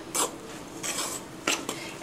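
Metal spoon scraping and clinking against a stainless steel mixing bowl in about three strokes, stirring an egg into a moist chopped-vegetable mixture.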